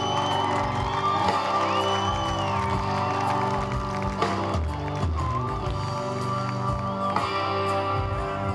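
Live rock band playing a song: electric guitars, bass guitar and drums in a steady groove, with sustained high notes over the top.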